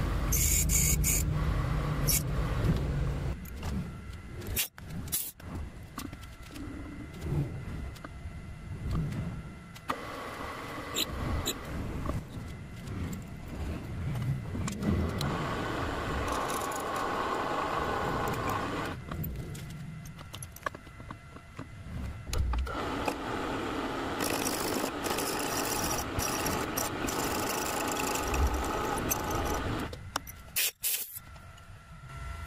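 A drilling machine running with a twist drill cutting into a steel bar, re-drilling at a slightly larger diameter a hole that drifted off position. The cutting sound grows louder in several long stretches and drops back between them.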